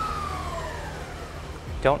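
Electric skateboard's motors and the dyno drum spinning down after a full-throttle run, a whine falling steadily in pitch as they slow and fading out about a second and a half in.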